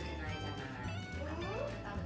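A baby's high-pitched vocal sound, with a short rising squeal late on, over background music with a steady low beat.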